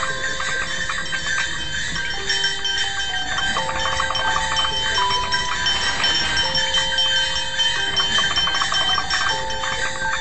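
Lo-fi Christmas-themed sound collage of layered loops and a circuit-bent Christmas toy: a slow melody of single held electronic tones over a dense, fast jingling rattle, with steady high tones above.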